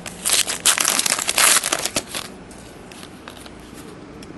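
A trading-card pack's foil wrapper being torn open and crinkled in the hands: a loud, dense crackling for about two seconds, then fainter scattered crinkles.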